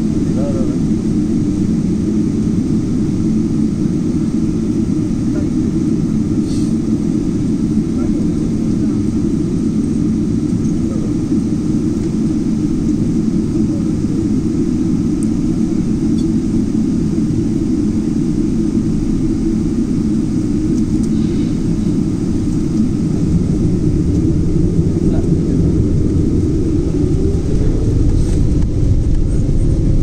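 Cabin noise of a Boeing 777-200LR on its takeoff roll: the GE90 engines run at high thrust under a steady low rumble from the runway. The noise grows louder in the last few seconds, with a rising whine as the aircraft gathers speed.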